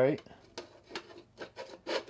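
Small hand screwdriver turning a screw into the metal cab roof of a scale RC truck: a run of light, irregular clicks with faint metal scraping.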